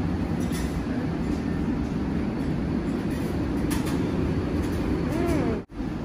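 Steady low rumble of ventilation, like the extractor hood over a buffet's hot-food counter, with a few faint clinks of dishes. The sound drops out abruptly near the end.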